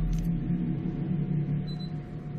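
A steady low motor rumble with a faint constant whine above it, running without change.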